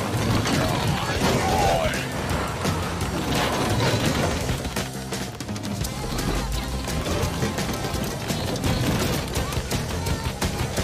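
Cartoon soundtrack: background music mixed with sound effects and high, wordless character voices.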